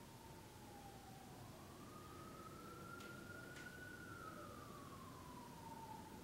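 Faint emergency-vehicle siren wailing, its pitch sliding down, then slowly up and down again. Two small clicks about three seconds in.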